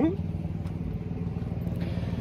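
A small motor running steadily with a low drone. A faint hiss of water spray comes in near the end.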